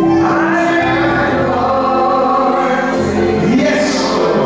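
Many voices singing a gospel song together in church, on long held notes.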